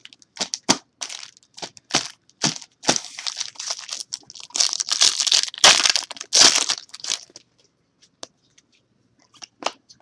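Sharp clicks and snaps of trading cards being handled, then a foil card-pack wrapper crinkling loudly as it is torn open, about halfway through. Near the end only a few faint clicks of cards remain.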